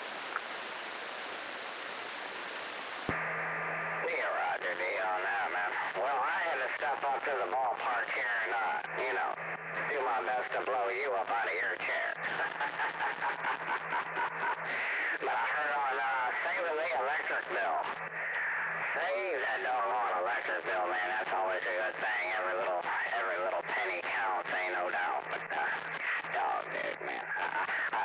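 Single-sideband CB radio receiver: about three seconds of static hiss, then a voice comes in over the lower-sideband channel and keeps talking, band-limited and not clear enough for the words to be made out.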